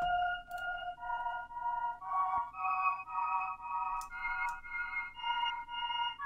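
A pulsing ambience layer of a trap beat playing back: soft stacked chord tones that swell about twice a second and move through a short progression, with no drums or bass.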